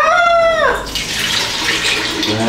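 A woman's short exclamation, then thick, creamy coconut-milk liquid pouring from a plastic bowl into a plastic container: a steady splashing pour that starts about a second in.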